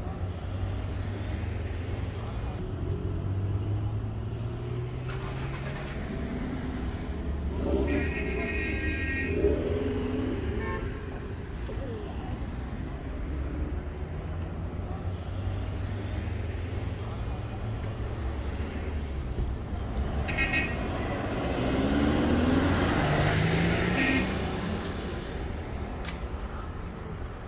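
City street traffic with a steady low hum of running and idling car engines. People's voices rise over it twice, about a third of the way in and again near the end.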